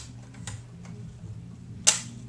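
A few faint clicks, then one sharp, loud click near the end as the Polaroid 320 Land camera is handled at eye level, over a steady low hum.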